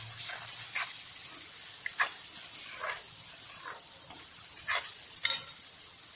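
Spiced peas, onion and tomato frying in mustard oil in a kadhai, sizzling steadily while a plastic spatula stirs the spices in, with about six short scrapes of the spatula against the pan, the sharpest about two seconds in and near the end.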